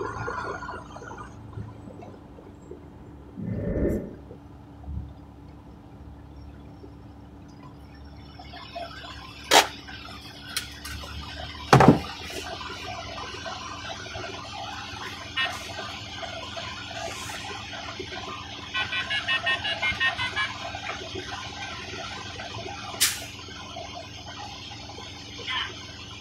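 Inside a truck cab: the truck's engine running low and steady, with a hiss coming up from about eight seconds in. A few sharp clicks, and a short run of fast pulses, about four a second, around the twenty-second mark.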